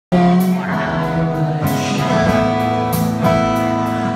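A live band plays at full level: strummed acoustic guitar, electric guitar and drums with regular cymbal strokes. The recording cuts in abruptly, partway into the song.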